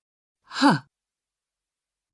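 A voice saying "huh", the phonics sound of the letter H, once about half a second in, with a falling pitch.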